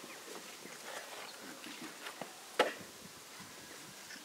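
Quiet outdoor background with faint scattered knocks and rustles, and one sharp click about two and a half seconds in.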